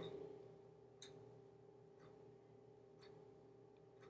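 Near silence: room tone with a steady faint hum and faint ticks about once a second.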